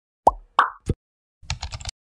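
Intro-animation sound effects: three quick cartoon pops in the first second, the first dropping in pitch, then a short run of rapid clicks.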